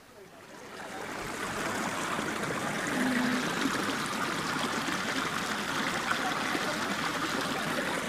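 Water running fast down a narrow earth channel, a steady rushing trickle that grows louder over the first couple of seconds and then holds even.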